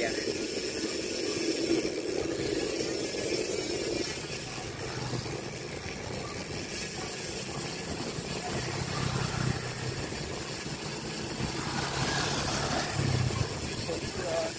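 Wind and road noise on the microphone of a moving bicycle, with a motorcycle engine humming steadily through the second half and loudest near the end.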